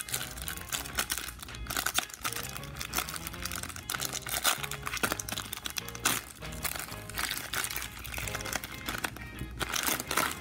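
Foil trading-card pack crinkling as it is pulled open by hand, in a run of sharp crackles, with soft background music underneath.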